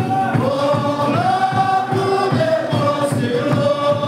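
A congregation singing a hymn together, many voices holding long notes and sliding between them, over a steady beat of hand claps about three a second.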